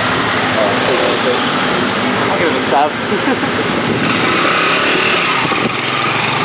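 Motorcycle engine running, a loud steady noise with faint voices of people talking behind it.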